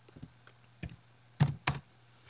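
Computer keyboard keystrokes typing a folder name: about half a dozen separate key clicks, the two loudest close together past the middle.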